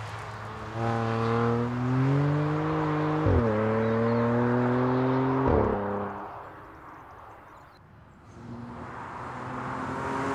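BMW M3 sedan's twin-turbo straight-six accelerating hard, its note climbing in pitch with two quick upshifts, about three and a half and five and a half seconds in. The sound then fades as the car moves away and swells again near the end as it comes back towards the camera.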